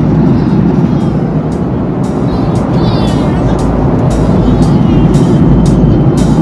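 Steady low rumble of a jet airliner cabin in flight, with background music keeping a steady beat over it.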